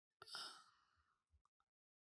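A person's short sigh, one breath out lasting under half a second; otherwise near silence.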